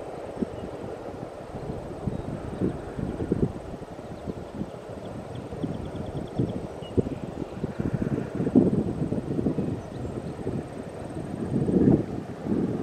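Freight train tank cars rolling past at a distance: a steady low rumble with irregular knocks from the wheels on the track.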